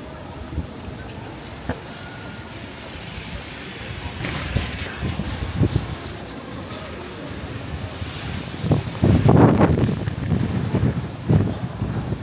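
Wet city-street ambience: traffic on a rain-soaked road, with wind buffeting the microphone. It swells about four seconds in and is loudest in a gust-like surge about nine seconds in.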